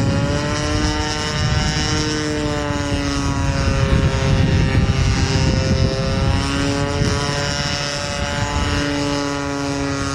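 Converted Homelite 30cc two-stroke gasoline engine, fitted with a bigger Walbro carburetor and a Pitts-style muffler, running in a giant-scale RC Carl Goldberg Giant Tiger flying overhead. Its note falls and rises in pitch several times as the plane passes and manoeuvres.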